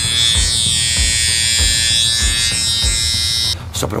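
Electric shaver sound effect played from a phone: a steady buzz that cuts off suddenly about three and a half seconds in.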